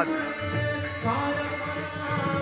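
Hindu devotional bhajan with a harmonium holding steady reed notes under a singing voice, in a slow stretch between chanted lines.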